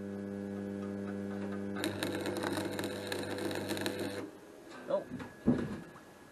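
Stick arc welder humming steadily, then about two seconds in the arc strikes on angle iron and crackles for a couple of seconds before cutting out. A short exclamation and a knock follow near the end.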